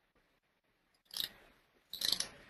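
Two short, sharp clicks, one about a second in and a louder one at the end, over faint room hiss.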